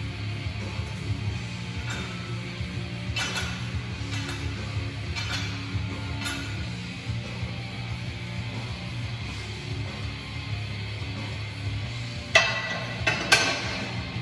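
Background music with a steady bass line playing in the room. Near the end, two loud metal clanks about a second apart as the steel barbell is set back onto the bench rack.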